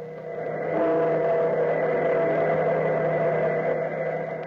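A deep bell tolling, its ringing tones held over a rushing noise that swells up to full strength about a second in.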